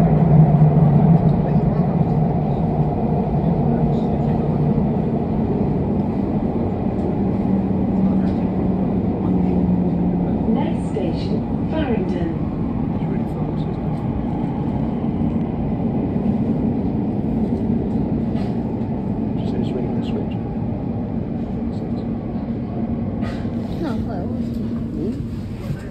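Elizabeth line Class 345 train running through a tunnel, heard from inside the carriage. A steady rumble carries a low motor hum that shifts a little in pitch, loudest in the first second and easing slightly after.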